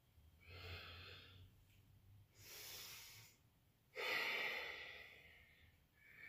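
A woman breathing audibly, three breaths spaced about a second and a half apart; the last, about four seconds in, is the loudest, a sighing exhale.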